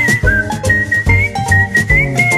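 Upbeat theme music: a whistled tune carried over a regular beat and bass line.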